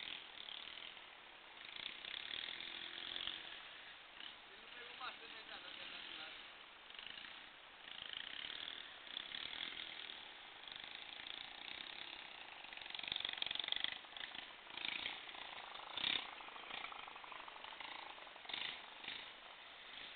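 Faint, indistinct voices over a steady noisy hiss, with a few short louder bursts and knocks scattered through it.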